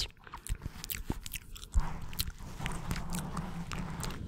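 Wet ASMR mouth sounds made right up against a foam-covered microphone: mic kissing, with many sharp lip and tongue clicks, and from about halfway a steady low rumble under the clicks.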